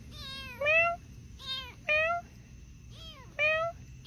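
A young kitten and a person trading meows, the person imitating a cat to coax the kitten closer. The calls alternate, about six short meows in all, louder rising ones answered by fainter falling ones.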